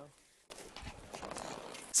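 Faint open-sea ambience aboard a small sailboat in light wind: a soft, even wash of water and wind noise with a few small irregular knocks. It begins about half a second in, after a moment of silence.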